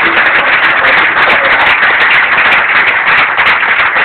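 Audience applauding loudly: a dense, continuous patter of many hands clapping.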